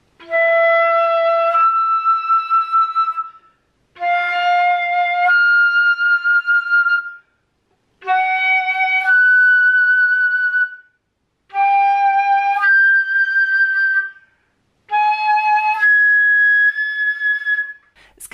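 Concert flute playing octave slurs: five times, a held note leaps up to the octave above and is held. Each pair starts a semitone higher than the last, climbing chromatically from E to G-sharp in the third octave. It is an octave exercise for getting the hard third-octave G-sharp to speak, blown with firm breath support.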